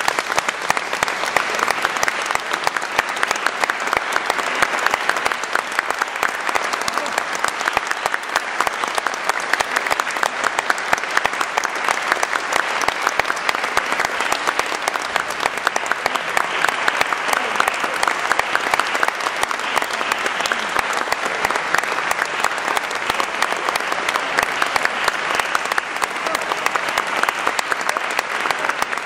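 Audience applauding, dense steady clapping that holds at an even level.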